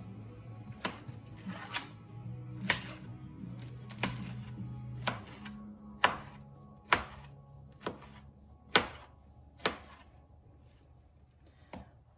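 A large kitchen knife cuts pineapple into chunks on a metal baking sheet. The blade taps the pan sharply about once a second, some ten times in all. Soft background music with held low notes plays underneath.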